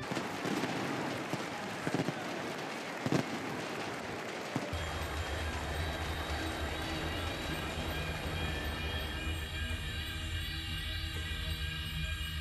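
Loud outdoor crowd noise with a few sharp bangs in the first five seconds. From about five seconds in, music with long held low notes comes in over the crowd.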